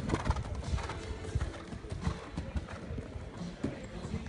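A ridden horse's hoofbeats in sand arena footing, a run of soft, uneven thuds at the canter.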